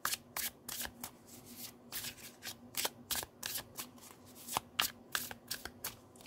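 A deck of tarot cards being shuffled by hand: a run of quick, irregular card clicks and slaps, several a second, as cards slide and strike against each other.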